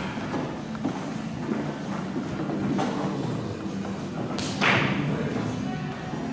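Steady low hum and murmur of a billiard room, with faint voices and a few light knocks, then one louder short thud about four and a half seconds in.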